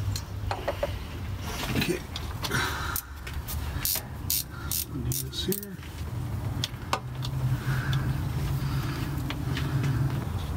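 Hand work on a car's ignition parts: a run of sharp clicks and light metal clinks in the middle as the distributor cap and coil are handled and fitted, over a steady low hum.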